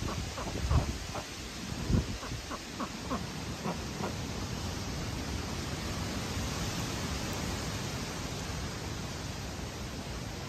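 Steady wind blowing through the pond-side vegetation, with gusts buffeting the microphone about one and two seconds in. Over the first four seconds, a run of short bird calls, a few a second.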